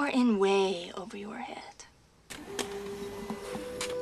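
A woman's line of film dialogue, then after a short pause a fax machine starts suddenly, printing an incoming page: a steady mechanical whir with a hum that steps up in pitch near the end.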